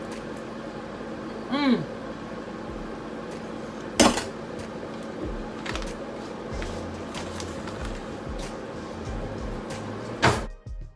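Kitchen handling sounds over a steady hum: a sharp knock about four seconds in and a few lighter clicks as dishes and utensils are moved. Near the start a short falling "mmm"-like voice sound.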